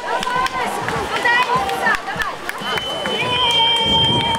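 Spectators' voices calling out and talking over each other as a runner reaches the finish of a road race. A steady high-pitched tone is held for about a second and a half in the second half.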